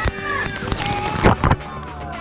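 A giant tipping bucket dumps its load of water onto a play structure: a heavy crash of falling water with loud splashes near the start and again about a second and a half in.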